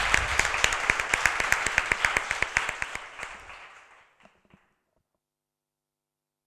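Applause from a small gathering, separate hand claps audible, thinning out and dying away about four seconds in.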